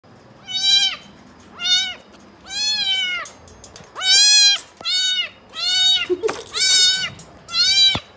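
A two-month-old kitten meowing over and over: about eight high-pitched meows, roughly one a second, each rising and then falling in pitch. A brief knock comes just after six seconds in.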